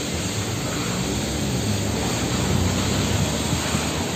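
Steady rushing outdoor background noise at an even level throughout, with no distinct events.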